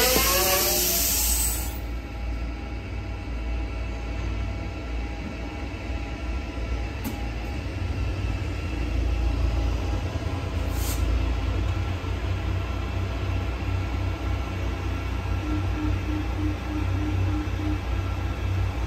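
Lyon metro train running at a platform: a steady low rumble, with two short clicks in the middle and a quick run of short beeps, about four a second, near the end. A brief noisy swoosh with gliding tones opens it.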